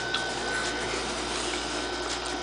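Felt-tip mop marker dragged across cardboard, a soft steady scraping under a steady background hiss.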